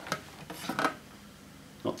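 Big plastic wheel of a Dyson Cinetic Big Ball canister vacuum spun by hand, giving a faint rasping rub during the first second before it goes quiet. It runs fairly smoothly: "not too bad".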